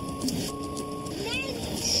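Single-engine light plane's engine and propeller running steadily, heard from inside the cabin as it rolls down the runway. Two short steady beeps sound in the first second, and someone gives a loud shushing hiss at the very end.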